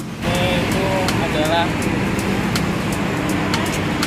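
Steady city road traffic noise, cars and buses passing on a busy road, heard under a man's speech.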